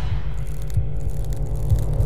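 Cinematic logo-intro sound design: a steady low rumble with irregular deep pulses, following a rising whoosh that peaks just as it starts.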